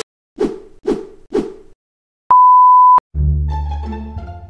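Three sharp hits about half a second apart, then a brief steady high beep. Music with a deep bass comes in right after.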